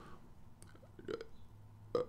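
A quiet pause in a man's talk: a few faint mouth clicks, then a soft low sound from the throat before he speaks again.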